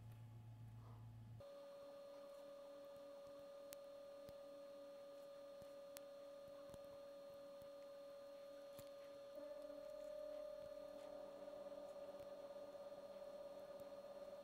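Near silence: room tone with a faint, steady mid-pitched whine and a few tiny ticks.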